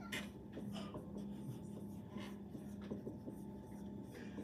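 Dry-erase marker writing on a whiteboard: a run of short scratchy strokes and squeaks as brackets are drawn one after another.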